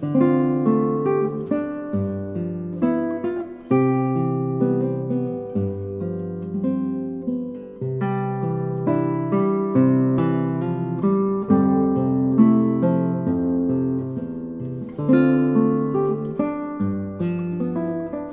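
Solo classical guitar playing a fingerpicked piece, with bass notes under a melody and the notes ringing and decaying one after another.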